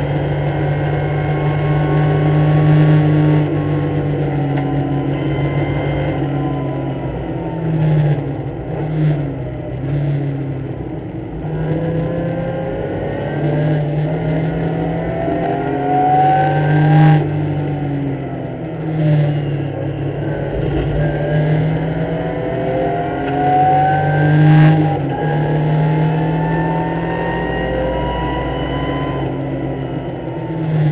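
BMW race car's engine heard from inside the cockpit, running hard. Its pitch sinks as the car slows for a corner, then climbs, broken by two sudden drops at the upshifts, about halfway through and again about three-quarters of the way.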